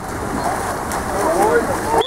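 Water splashing as swimmers churn through a pool during a water polo game, a steady noisy wash, with distant voices shouting faintly in the second half.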